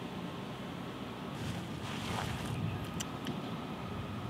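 Steady outdoor ambience by open water, mostly wind noise on the microphone, swelling a little in the middle.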